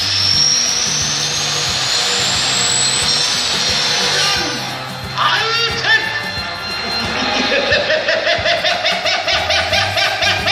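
Loud action-show soundtrack music played over loudspeakers. For the first few seconds a hissing sweep rises in pitch over a steady bass line, then a fast driving beat takes over at about four pulses a second.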